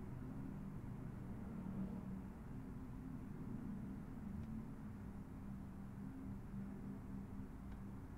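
Low steady hum of room tone, with a few faint clicks.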